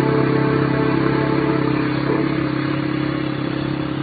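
Quad (ATV) engine running steadily as it drives away, growing slowly fainter.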